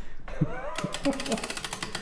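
Click-type torque wrench mechanism giving a rapid, even run of small clicks, about a dozen a second, as its setting is dialled in or its ratchet is worked. A short murmur of voice comes just before the clicks.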